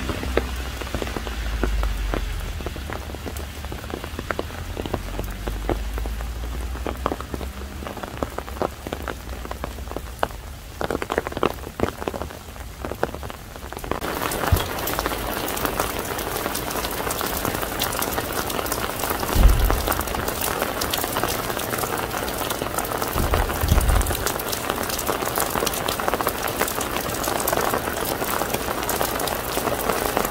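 Spring rain falling: scattered drops ticking for roughly the first half, then a dense, steady patter of heavier rain. Two short low thumps sound in the second half.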